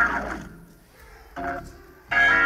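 Church organ finishing a descending run that fades away in the first half-second, then a brief chord about one and a half seconds in.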